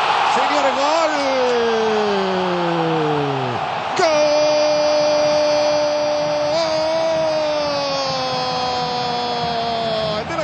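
Football commentator's long drawn-out "gol" cry for a goal from a penalty kick, held in two breaths: the first for about three seconds, sliding down in pitch, the second from about four seconds in, held about six seconds. Stadium crowd noise lies beneath.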